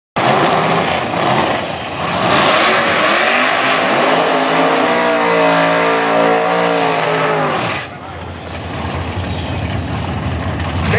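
Drag cars doing burnouts: a V8 engine held at high revs with the rear tyres spinning, loud and steady, cutting off about eight seconds in. Near the end a second car's burnout starts and builds.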